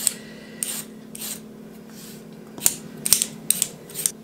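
Vegetable peeler scraping down a carrot in short strokes, about six scrapes at uneven spacing, over a faint steady hum.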